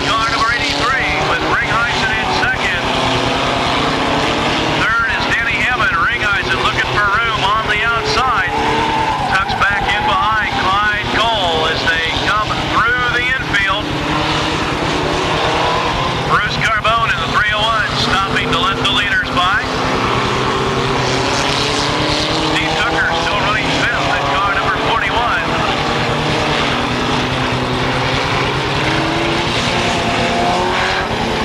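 Several mini stock race cars running hard around a figure-eight track, engines revving up and down, with many overlapping pitches rising and falling as cars accelerate and lift.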